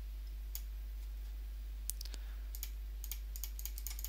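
Light clicks of a computer mouse being used to work on-screen controls, a few scattered at first and then a quicker run near the end, over a steady low hum.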